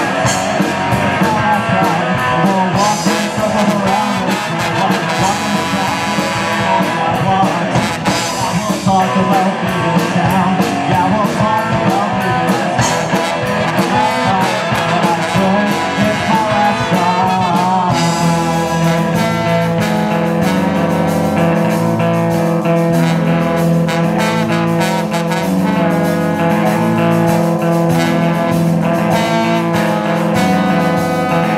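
Live ska-punk rock band playing: electric guitars, bass, drums and keyboard with trumpet and trombone lines on top. About eighteen seconds in the arrangement shifts, the bass and guitar parts standing out more plainly.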